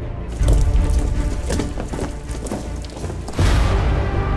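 Dramatic film-trailer score with a heavy low bed, hit by a deep boom about half a second in and a second boom with a rushing swell near the end.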